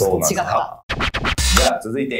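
A short edited transition sound effect about a second in: a quick run of sharp strokes ending in a deep thump, between stretches of voices and laughter.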